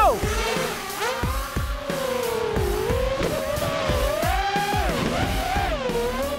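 Racing quadcopters' electric motors and propellers whining as they take off and race, the pitch rising and falling with the throttle, over background music.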